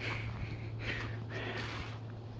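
A person breathing and sniffing softly close to the microphone, three short breaths, over a low steady hum.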